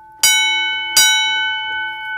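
Edwards 323D 10-inch single-stroke fire alarm bell struck twice, about three-quarters of a second apart, each stroke ringing on and fading slowly. It is a ping test set off from the coded pull station's test port.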